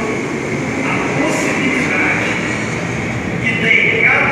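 A man preaching in Portuguese through a handheld microphone and PA loudspeakers, his amplified voice indistinct, with a steady rumbling noise beneath it.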